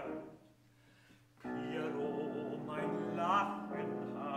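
Art song for baritone voice and grand piano. A sung phrase dies away into a pause of near quiet, then about a second and a half in the piano comes back in with a chord and the voice rejoins with vibrato.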